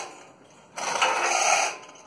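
A hand-worked metal mechanism ratcheting in one burst of rapid clicking and rattling, about a second long, starting just before the middle.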